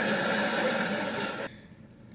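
Sitcom studio audience laughing, heard through a TV speaker, cut off abruptly by an edit about one and a half seconds in; fainter after the cut.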